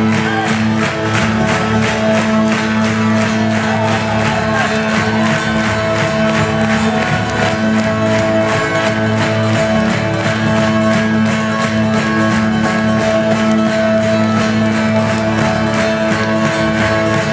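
Acoustic guitar strummed in a steady rhythm over held low notes, played live as an instrumental passage with no singing.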